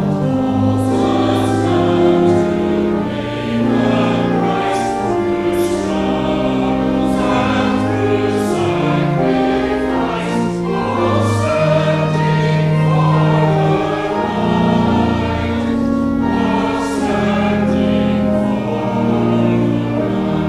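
A mixed choir of men's and women's voices singing a hymn in slow, held notes over a low sustained instrumental accompaniment.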